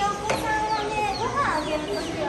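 A crowd of baby chicks peeping: many short, high, falling cheeps overlapping continuously, with children's voices underneath.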